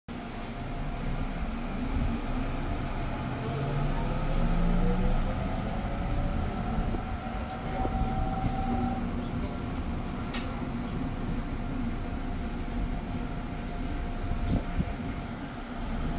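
Interior of an electric commuter train under way: a steady rumble of wheels and running gear, with a motor whine rising in pitch about four seconds in, and a few sharp ticks later on.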